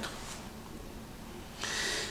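A pause in a man's speech: low room tone, then a short hissy breath in near the end, just before he speaks again.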